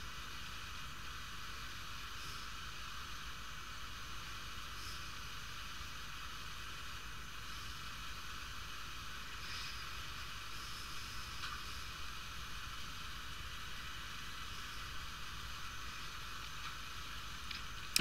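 Steady faint hiss with a few thin high tones running under it: background room tone with no distinct event.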